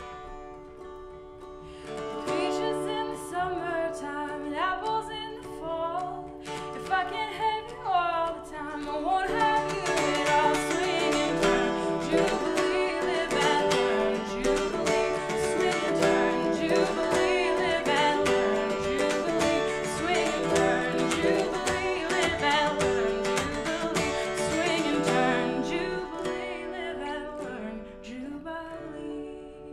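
Two mountain dulcimers strummed and picked together in a tune, with a woman singing over them. The playing grows louder about two seconds in and fuller again near ten seconds.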